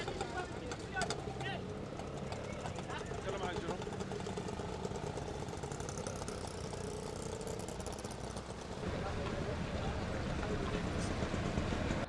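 Outdoor street-market ambience: background chatter of voices over a steady low rumble of an engine and traffic, the rumble growing a little louder about nine seconds in.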